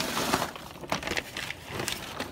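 A muddy plastic protective sheet rustling and crinkling as it is pulled off and swept aside, with a loud rustle at the start and several sharp crackles after.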